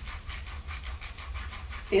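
Fingers running across the plastic bristles of a pink Wet Brush detangling brush, a quick run of soft ticks, testing how soft the bristles are.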